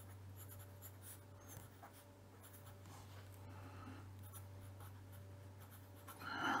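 Fineliner pen writing on paper: faint, quick scratching strokes of handwriting over a low steady room hum.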